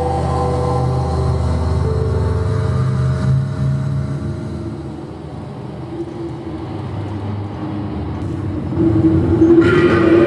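Soundtrack of the projected film: low droning music with held notes fades out over the first few seconds, then a rumbling noise with a steady hum swells near the end.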